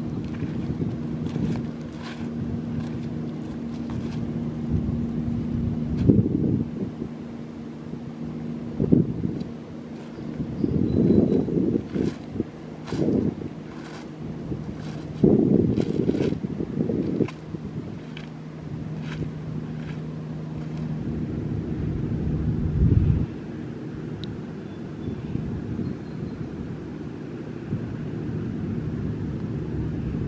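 Wind buffeting the microphone in irregular gusts over a steady low motor hum, with faint scattered clicks like steps on beach pebbles.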